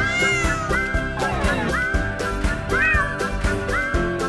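A cartoon cat meowing several times over background music with a steady beat.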